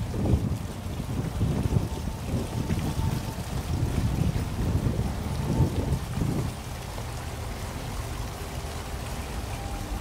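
Swimming-pool water sloshing and churning as a person ducks under and comes back up, a muffled low rumble without sharp splashes. It eases off a little after about six and a half seconds.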